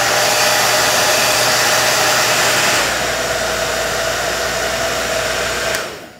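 Revlon Salon 360 Surround Styler hair dryer running: a loud, steady rush of air with a steady whine from the motor. About halfway through the sound steps a little quieter and lower, and it shuts off just before the end.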